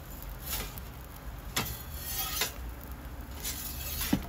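Metal pizza peel scraping and tapping a few times against the hot stone floor of a Gozney Roccbox oven as it lifts the edge of the pizza, over a steady low rumble.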